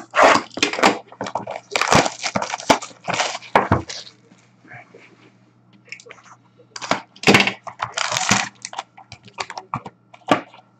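Plastic shrink wrap on a sealed hockey card box being slit with a box cutter and torn off, then the cardboard box opened and its packs pulled out: rustling, crackling bursts, a short lull in the middle, then more crackling.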